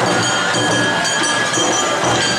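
Live Awa Odori festival music from a marching band playing drums, the ringing kane gong and flutes, at a steady dance rhythm. High tones ring on steadily above the drumming.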